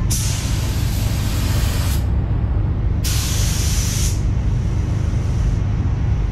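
A gravity-feed paint spray gun hissing in bursts as compressed air atomises paint onto a car's side panels. There are two strong bursts, about two seconds and one second long, with a fainter spray after the second, all over a steady low rumble.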